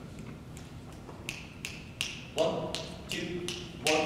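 An a cappella group starting a song: sharp, evenly spaced clicks set a beat of about three a second from about a second in, and held sung chords in several voices come in about halfway through.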